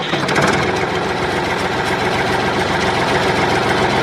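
Tractor engine running steadily with a fine, even knocking beat. It is a sound laid over a model tractor driving off, and it starts and cuts off abruptly.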